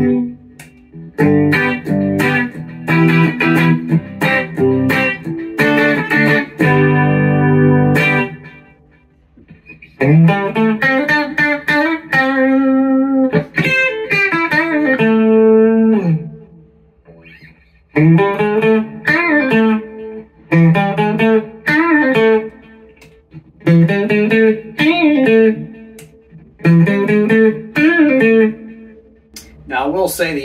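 Squier Mustang electric guitar, Indonesian-made, played through a Fender Mustang GT amp. For about the first eight seconds it plays strummed chords. After a short pause come phrases of single notes with bends and slides, broken by brief pauses.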